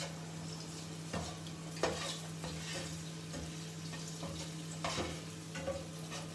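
Peeled boiled eggs sizzling in oil in a nonstick frying pan, with about four sharp knocks as a utensil turns them against the pan; the loudest comes near two seconds in. A steady low hum runs underneath.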